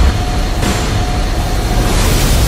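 Fire sound effect: a loud, steady rushing noise with a deep rumble underneath, as of a flame burst swelling up.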